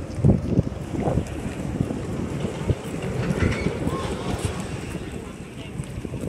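Wind buffeting the microphone of a camera carried while walking, a rough low rumble with a few stronger gusts in the first second or so, with faint voices in the background.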